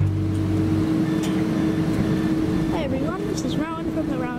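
Steady hum from a stopped E-class tram over outdoor background noise, with the low end of music dying away in the first second. A man starts talking near the end.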